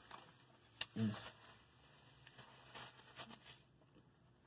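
A man chewing a mouthful of bacon cheeseburger, mostly quietly, with a short closed-mouth 'mm' of approval about a second in. A single sharp click comes just before it, and faint small mouth or wrapper noises follow.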